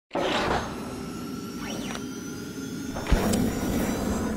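Logo-intro sound effects: whooshing swishes, with a low thump about three seconds in followed by a short high tone.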